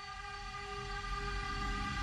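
A quiet, steady low rumble with a held hum of several even tones, a sound-design drone.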